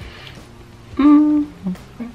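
A person's closed-mouth 'mmm' hum, held steady for about half a second about a second in, followed by a shorter hum. It is an appreciative 'mmm' at the product's scent.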